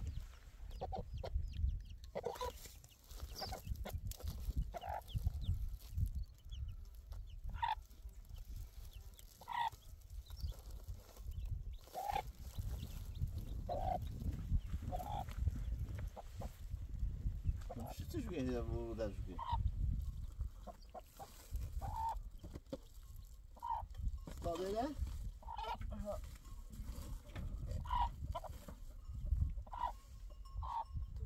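Domestic chickens: a hen clucking in short calls every second or two, with newly hatched chicks peeping. A little past halfway comes one longer, wavering call.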